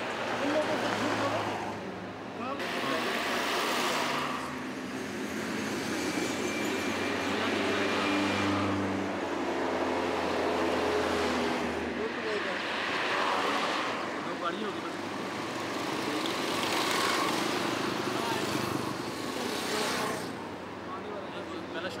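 Road traffic passing: vehicles swell and fade one after another every few seconds, with a low engine hum under the noise of tyres.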